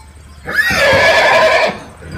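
A horse whinnying once: a single loud call of about a second, starting about half a second in.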